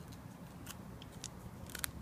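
Hard plastic card holders clicking lightly against each other as one is picked out of a packed box: a few faint, sharp ticks, with a quick cluster near the end.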